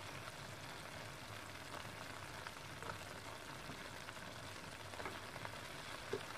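Tomato and onion masala cooking in oil in a pan: a faint, steady sizzle with a few small scattered pops.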